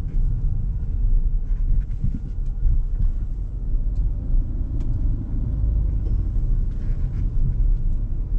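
Steady low in-cabin rumble of a 2022 Proton Iriz 1.6-litre petrol car with a CVT being driven: engine and road noise, with a few faint ticks.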